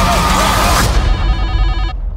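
A loud trailer sound-design hit: dense crash-like noise over a deep rumble, with a high steady ringing tone through it. Just under a second in, the noise cuts off and leaves the ringing tone with a low rumble, both fading.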